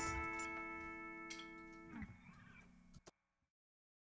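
The final guitar chord of the song rings and fades. About two seconds in, the strings are muted with a short scrape, and a click follows about a second later.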